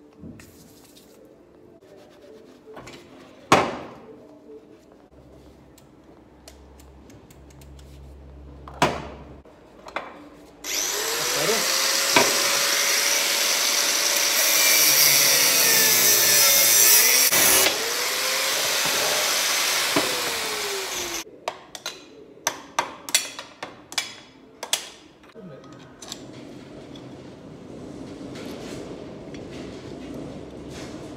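Angle grinder cutting through rusted steel bolts for about ten seconds, its motor pitch sagging as the disc bites and picking up again, with a short break partway through. Sharp metal clinks and taps follow once it stops, and a couple of single knocks come before it starts.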